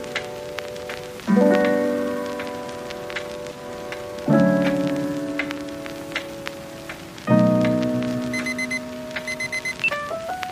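Soft background music: sustained keyboard chords, a new chord about every three seconds, each slowly fading, with faint clicks scattered throughout and a brief high chiming figure near the end.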